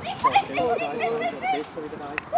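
Several voices shouting and calling out together in short rising-and-falling cries, urging on a horse-drawn carriage team.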